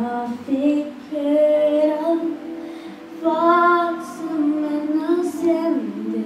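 An eleven-year-old girl singing a Swedish Christmas song into a handheld microphone, holding long notes that swell and fade in phrases.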